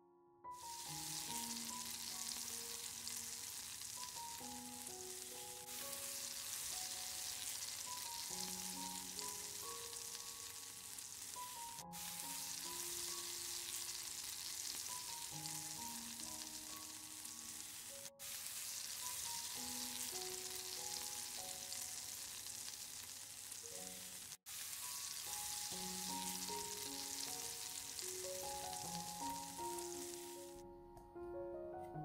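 Onion, carrot and potato strips sizzling steadily as they fry in a pan, the hiss broken off by a few brief gaps.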